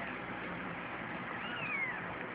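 A ten-day-old kitten gives one thin, high mew that falls in pitch, about one and a half seconds in, over a steady background hiss.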